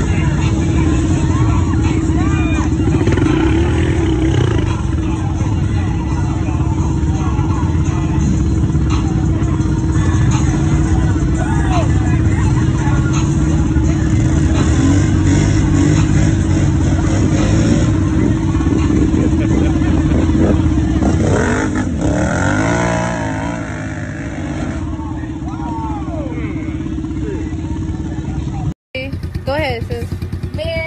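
ATV engine running hard at high throttle while its wheels churn in deep mud, with a steady whine over the engine's rumble and people shouting over it. The engine eases off about three-quarters of the way in, and the sound cuts out briefly near the end.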